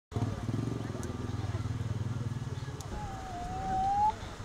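An engine running steadily with an even, rapid pulse, which stops just under three seconds in. Then a single drawn-out high tone, rising slightly in pitch and growing louder, runs through the last second.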